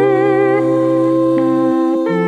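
Four-voice a cappella group singing a slow Korean children's song in wordless close harmony, sustained chords with vibrato in the upper voices. The chord shifts about 1.4 s in, and the bass line drops out near the end.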